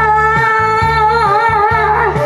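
A woman singing a Korean trot song live through a microphone and PA, holding one long note with a slight waver, over an amplified backing track with a steady bass and drum beat.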